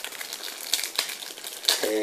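Plastic trading-card pack wrapper crinkling and crackling as fingers work it open and slide the cards out, with irregular small crackles.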